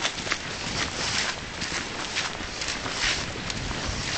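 Footsteps crunching through dry leaf litter on a woodland path at a brisk walking pace, about two to three steps a second, over wind and handling rumble on the microphone.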